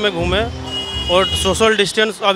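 A man speaking Hindi into a handheld microphone over street traffic noise. A high steady beep lasts just under a second near the middle.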